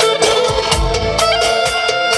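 Live band music: a clarinet holding a melody over an electronic keyboard accompaniment and a steady drum beat.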